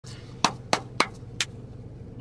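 Four sharp hand claps, spaced about a third of a second apart and the last one weaker, over a steady low hum.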